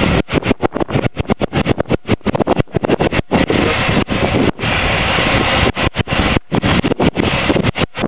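Loud wind buffeting the microphone, a rumbling rush chopped by many brief sudden dropouts.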